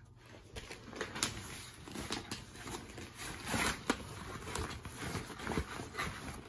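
Quiet rustling and a few scattered light knocks from hands rummaging in a fabric tote bag and handling the toys and books inside.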